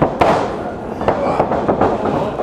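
Sharp smacks of strikes and body contact between two pro wrestlers: a loud crack about a fifth of a second in, then several more close together around a second later.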